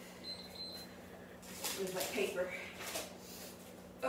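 A woman's voice, briefly, from about a second and a half in until about three seconds, over a steady low hum.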